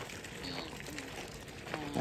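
Quiet crunching of footsteps and stroller wheels on gravel, with faint voices in the distance.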